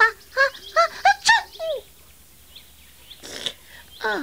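A human voice doing a baby bird's chirps for a chick puppet: about six quick squeaky chirps, the last one sliding down in pitch a little after one and a half seconds in. A brief hiss follows near the end.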